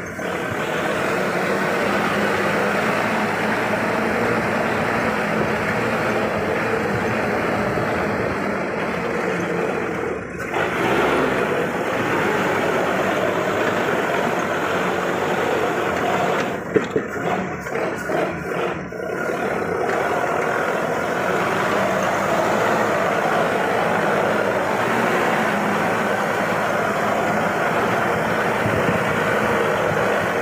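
Toyota Land Cruiser hardtop's engine running steadily as the 4x4 drives along a rough dirt track. There is a brief dip about ten seconds in, then an uneven, choppy stretch with a sharp knock around seventeen seconds.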